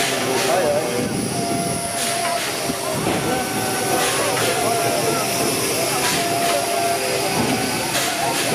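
A railway turntable turning with a steam locomotive aboard, a steady tone coming and going a couple of times over a steady hiss and crowd chatter.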